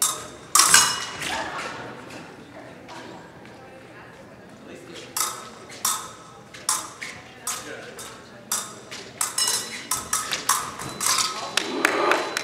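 Épée blades clashing and fencers' feet striking a metal fencing strip: one loud sharp clash about half a second in, then a quieter stretch, then a quick flurry of sharp metallic clinks and taps in the second half.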